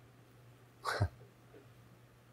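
Quiet room tone broken once, about a second in, by a man's brief breathy vocal sound, a short exhale whose pitch falls away.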